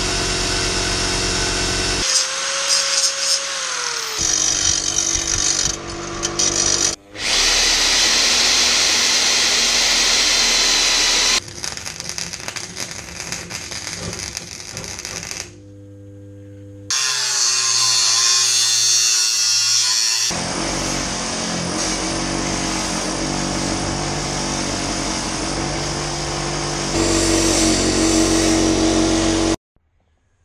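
Workshop power tools in short clips cut together: a bench grinder grinding metal and an angle grinder cutting steel, each running steadily, with the sound changing abruptly at every cut. It cuts off just before the end.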